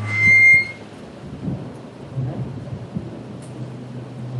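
A short, high-pitched squeal of public-address microphone feedback, one steady tone lasting well under a second. It is followed by faint knocks and rustling, typical of a microphone being handled.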